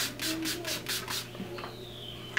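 Makeup setting spray misted from a pump bottle onto the face: a click, then six quick sprays in little more than a second.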